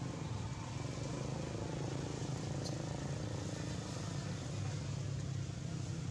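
Steady low motor rumble, like vehicle engines running at a distance.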